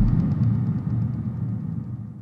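The tail of an electronic outro sting fading away: a low rumbling remainder dies steadily out, with faint evenly spaced ticks above it.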